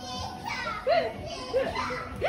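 High-pitched excited voices making short rising-and-falling calls and squeals, without clear words, as onlookers cheer a player on.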